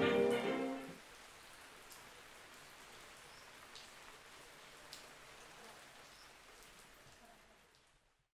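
A music track's last notes stop about a second in, leaving faint steady rain on a window with a few sharp drip ticks, fading out near the end.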